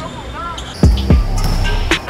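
A basketball bouncing twice on an indoor court floor about a second in, two heavy thumps close together.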